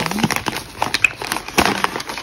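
Irregular crinkling and crackling rustle close to the microphone, made of many quick clicks.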